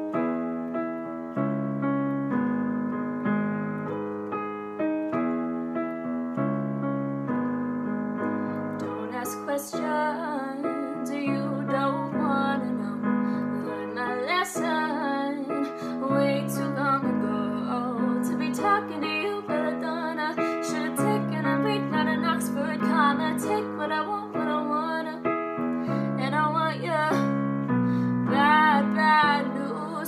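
Piano accompaniment playing slow chords, with a young woman singing a pop song over it from about eight seconds in.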